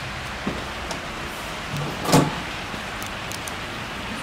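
A push-bar door thuds shut once, about halfway through, over a steady background hiss.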